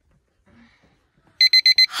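Digital alarm clock beeping, a wake-up alarm: a quick group of about four short, high-pitched beeps starting about one and a half seconds in.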